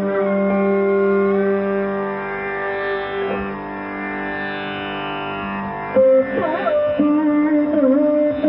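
Carnatic classical instrumental music: a slow melody of long held notes with sliding ornaments over a steady drone, with no percussion. A sharper, louder note comes in about six seconds in.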